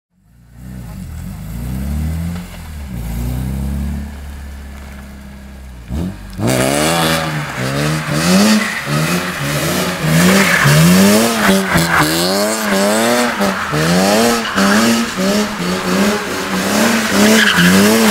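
A custom BMW E46 sedan doing donuts: engine revving and tyres squealing as the car slides. The first six seconds are lower and quieter. About six seconds in it turns loud, with the tyre squeal and an engine pitch that rises and falls over and over as the rear wheels spin and grip.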